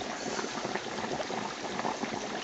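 Hot oil bubbling and sizzling steadily around a turkey in a deep fryer.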